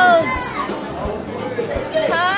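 Dining-room chatter and children's voices, opening with the end of a high, held squeal that falls away shortly after the start.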